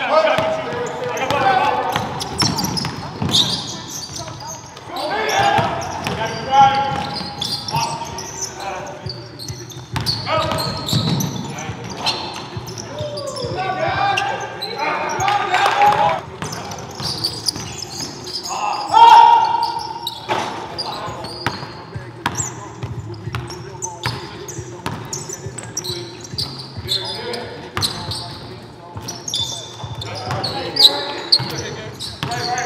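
A basketball dribbled and bouncing on a hardwood gym floor amid players' shouts and calls, with one loud shout about two-thirds of the way through.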